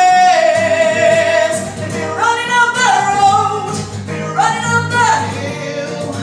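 A woman singing solo into a microphone over instrumental accompaniment: a long held note with vibrato, then two phrases that leap up in pitch and hold.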